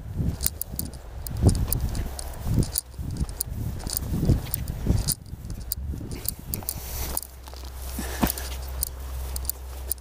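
Handling noise while fly casting: rustling and many irregular small clicks, with soft low thuds in the first few seconds. A steady low rumble sets in at about seven seconds.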